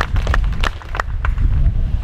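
Steady low rumble of wind buffeting an outdoor microphone, with a quick run of short sharp clicks in the first second and a half.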